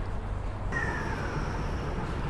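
Metro train's motor whine falling slowly in pitch over a steady rumble as the train slows into the station, with a faint high steady tone above it; the whine begins abruptly about a second in.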